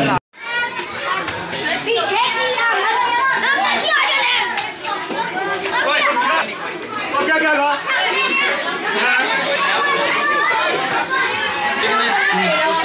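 A crowd of children talking and calling out all at once, many voices overlapping. The sound drops out briefly at a cut just after the start.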